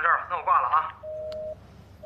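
A flip phone's call-ended beeps as the call is hung up: a steady two-note beep lasting about half a second, then a second one after a half-second pause.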